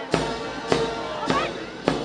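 Marching military band playing: a bass drum strikes a steady march beat a little under two times a second under sustained brass chords.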